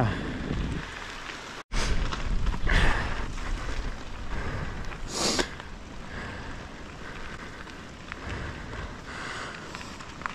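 Mountain bike riding over a dirt trail, with steady wind rumble on the camera microphone and tyre and trail noise. It drops out for an instant about two seconds in (an edit), and there are a couple of short louder rushes of noise.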